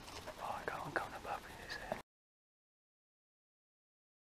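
A man whispering close to the microphone, with a few small clicks; about two seconds in the sound cuts off to complete silence.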